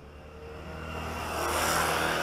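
Motorcycle engine approaching and passing close by, growing steadily louder to a peak near the end.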